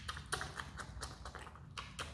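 Himalayan marmot chewing and biting a piece of orange held in its paws: quick, irregular clicks of its teeth, several a second.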